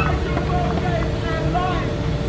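Several people's voices chattering and calling out in a group, over a steady low rumble and a faint steady hum.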